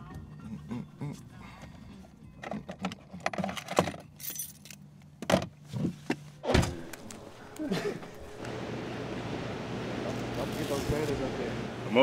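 Handling noise in a car: a run of small clicks and knocks with keys jangling, and one heavy thud about six and a half seconds in. A steady rush of background noise comes in near the end.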